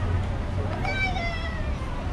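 A single high-pitched cry, about a second long, starting near the middle and falling in pitch. It sounds over a steady low street and wind rumble.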